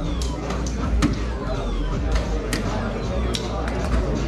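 Soft-tip darts striking electronic dartboards: about half a dozen sharp, irregularly spaced clicks, two of them louder than the rest, over the steady chatter of a busy hall.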